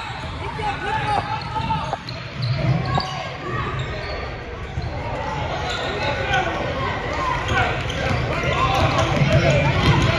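Basketball bouncing on a hardwood gym floor amid the shouts of players and spectators, all echoing in a large gym.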